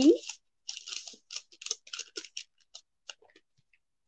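Paper rustling and crinkling in a run of short, irregular crackles as a pleated paper fan fold is handled and spread open on top of a paper gift bag.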